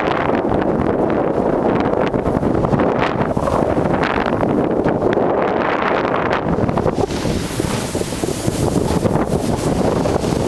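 Wind buffeting the microphone of a handheld camera carried downhill at speed, a loud steady rumble, with the hiss of sliding through fresh snow mixed in.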